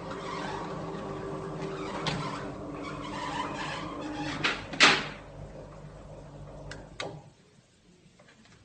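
Stair lift motor humming steadily as it carries the bulldog up the stairs, with a loud knock about five seconds in and two sharp clicks near seven seconds, after which the hum stops.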